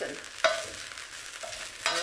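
Stir-fried chicken sizzling in a hot wok while a spatula scrapes and stirs it out of the pan, with a sharp knock about half a second in.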